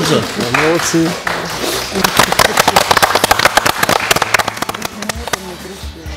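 A small group clapping, starting about two seconds in and dying away near the end, with a voice heard just before it.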